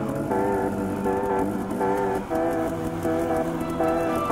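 Background music, a guitar-led instrumental with notes changing about every half second over a steady low bass.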